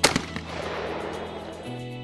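A single shotgun shot fired at a clay target just after the shooter's call, its report echoing and dying away over about a second and a half.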